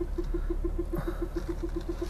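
Renault parking-sensor warning beeping rapidly and evenly, about seven short beeps a second: an obstacle is close as the car pulls out of a parking spot. A low, steady hum from the car runs underneath.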